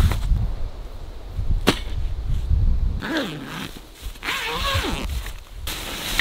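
Canvas tent fabric being handled and fastened: rustling over a low rumble, with one sharp click a little under two seconds in. In the second half come two short wavering pitched sounds that rise and fall, then more rustling of fabric.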